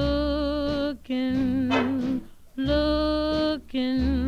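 A 1940 swing big-band recording with a row of long held notes, each about a second long and sung or played with vibrato, broken by short gaps. The fourth note starts just before the end.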